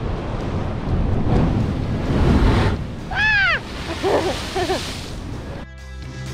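Sea waves surging and breaking against a rocky shore, with wind buffeting the microphone; the surge is loudest about two seconds in. Just after the surge comes one brief high cry that rises and falls, then a few shorter wavering calls, and guitar music starts just before the end.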